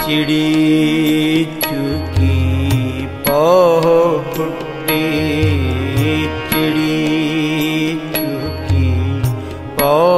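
Shabad kirtan music in a passage with no words sung: sustained melodic accompaniment over low drum strokes that recur every couple of seconds. A wavering, vibrato-like melodic line enters about three seconds in and again near the end.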